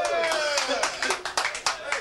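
A few people clapping by hand: about ten sharp, irregular claps over roughly a second, just after a long held note bends down and fades out near the start.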